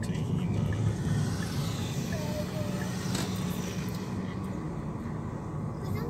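Steady low road and engine noise of a car driving, heard inside the cabin.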